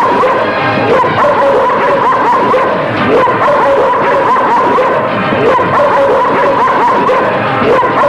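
Dogs barking over a film's background music score.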